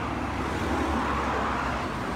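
Road traffic noise, a vehicle going by, swelling a little about a second in and easing off again.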